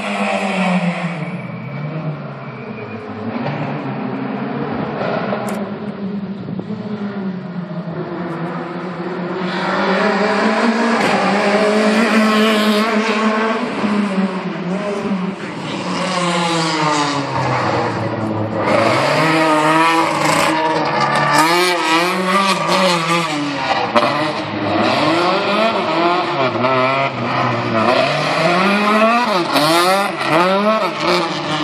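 A competition car's engine being driven hard around a tight timed course, revving up and dropping back again and again through quick gear changes. It is fainter for the first several seconds and closer and louder from about ten seconds in.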